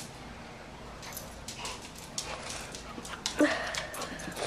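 A dog whimpering briefly near the end, after a run of light clicks and scuffs.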